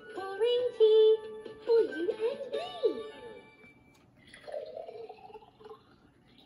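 Fisher-Price Laugh & Learn musical teapot toy playing a song in its electronic singing voice over a tune; the song ends about three seconds in with a note sliding downward. A fainter sound from the toy follows near the end.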